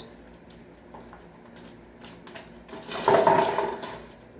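Arrows knocking and sliding against a homemade cardboard-tube back quiver made of taped Pringles cans: a few light clicks, then a louder scraping rattle with a hollow ring from the tube for about a second near the end.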